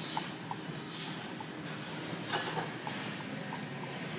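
A lifter's forceful breaths while straining through a heavy barbell back squat: a few short, hissy bursts, the strongest about two seconds in, over steady gym room noise.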